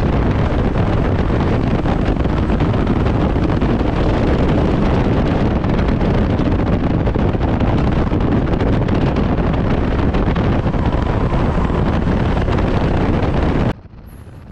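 Stock car running at racing speed around an oval, heard from inside its stripped-out cabin: a loud, steady mix of engine and road noise with wind buffeting the microphone. It cuts off suddenly near the end.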